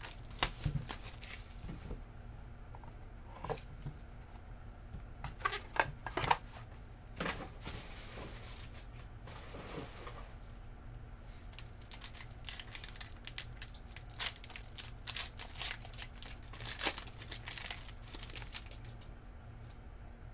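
Hands handling trading cards and their pack wrappers: wrapper crinkling and tearing, with scattered short clicks and snaps as cards slide and tap against each other.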